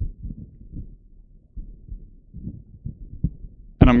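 Handling noise from a vocal microphone being taken off its stand into the hand: irregular low thumps and rubbing carried through the mic itself.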